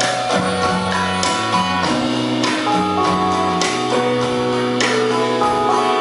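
Live rock band playing: electric bass line, guitar and keyboard chords, and drums with repeated cymbal crashes.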